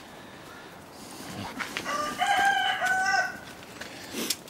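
A rooster crowing once, about two seconds in: a few short notes, then a long held note.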